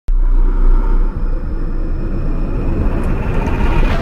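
Produced intro sound effect: a loud deep rumble with faint high tones over it, swelling into a rising whoosh that ends in a sharp hit at the end.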